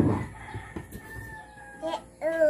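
A knock at the start, then a fowl calling: one long held call that falls slightly in pitch and stops near the end.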